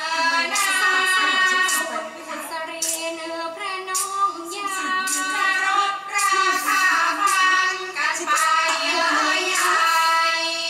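Thai classical singing for a lakhon nok dance-drama: a high voice holding long, ornamented, bending notes, with light strikes about once a second keeping time.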